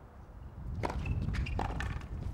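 Tennis ball struck with rackets during a point: a sharp pop from the serve about a second in, then more sharp pops near the end as the ball bounces and is returned.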